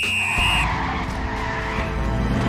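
Action-film sound effects of a vehicle skidding: a high steady squeal that stops about half a second in, then a noisy skid over low engine rumble.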